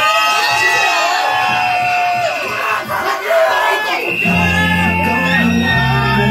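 Crowd whooping and shouting over a held high note, then a dance track with a heavy bass line comes in about four seconds in.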